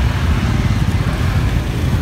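Motorbike engine running nearby: a low steady rumble.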